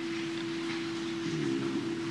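A steady hum on one pitch over faint even hiss, with no speech.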